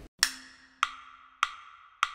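Four evenly spaced wood-block clicks, about 0.6 s apart, counting in the bar before a ukulele example begins.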